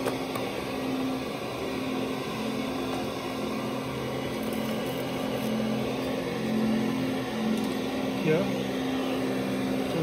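A steady low electric hum from a running motor, swelling and easing slightly, with a brief voice-like sound about eight seconds in.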